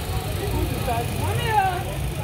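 Background voices of people talking over a steady low rumble, with one high rising-and-falling call about one and a half seconds in.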